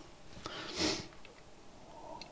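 A single short sniff, a quick breath drawn through the nose, a little under a second in.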